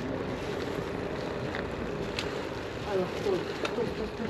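Steady wind noise on the microphone of a moving bicycle, with a faint rushing of tyres on the road and a few small clicks.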